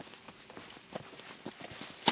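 A small pony's hooves and a man's booted footsteps walking on a dirt track, an uneven patter of soft knocks and scuffs coming up close.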